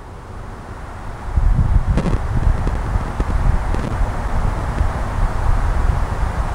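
Wind buffeting the microphone: a low, fluttering rumble that builds over the first second and then stays loud.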